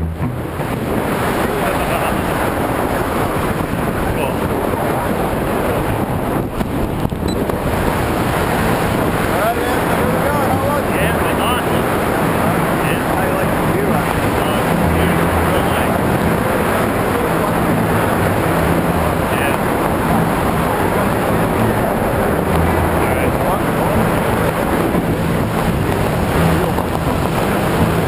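Wind rushing over the camera's microphone during parachute canopy flight: a steady, loud rush with a gusty low rumble.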